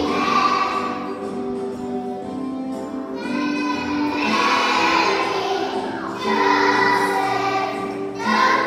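A group of young children singing a song together, with musical accompaniment.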